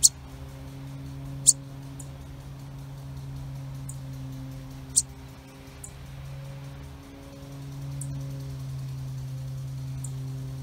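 Fledgling sparrow giving short, sharp, high-pitched begging chirps for its parent, three loud ones (right away, about a second and a half in, and about five seconds in) with fainter ones between, over a steady low hum.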